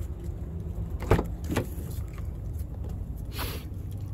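Rear door of a 2018 Dodge Journey being opened: a sharp latch click about a second in and a second click about half a second later, then a brief rustle, over a steady low hum.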